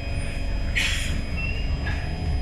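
SMRT C151 train heard from inside the car as it comes to a stop at a station: a steady low rumble, with a short hiss of air just under a second in.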